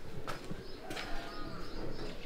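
Doves cooing with faint bird chirps, and a couple of light taps.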